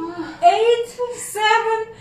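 A woman counting exercise repetitions aloud in a chant, each number held on a steady pitch for about half a second.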